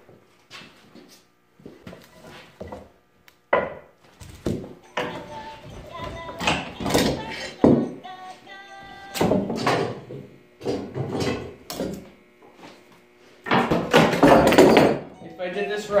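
Irregular series of hammer blows knocking a chisel between stacked glued-up pallet-wood panels to split them apart at the joint left without glue. There are sharp wooden knocks, loudest in a cluster near the end.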